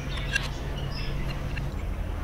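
Steady low hum with a few faint light clicks in the first half second.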